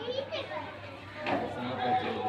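Several people talking and calling out over one another, children's voices among them.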